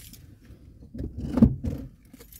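Clothing rustling and a dull thump as a person shifts about in a car seat, with the thump about a second and a half in being the loudest sound.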